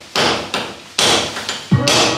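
A hammer strikes high on a wall a few times, about half a second apart, each blow ringing briefly in a bare room. Background music with a bass beat comes in near the end.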